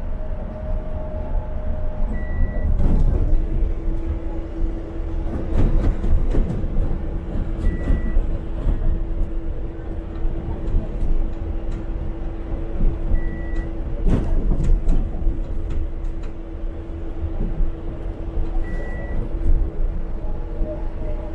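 Articulated city bus in motion, heard from the driver's cab: steady engine and road rumble with occasional knocks and rattles. A steady hum comes in about three seconds in, and a short high beep repeats four times, about every five and a half seconds.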